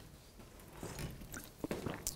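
A man drinking from a small plastic water bottle: faint swallows and a few soft clicks of the bottle, mostly in the second half.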